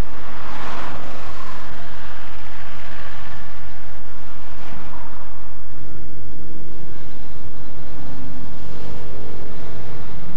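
Road and engine noise of a moving car heard from inside the cabin on a wet road, with a swelling swish about a second in and again around five seconds in, like vehicles passing. A steady low hum runs underneath.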